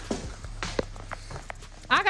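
A few short, faint knocks and clicks over a steady low hum, with a voice starting at the very end.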